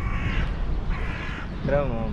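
A bird giving two harsh caws, each about half a second long and a second apart, over a low rumble of wind on the microphone.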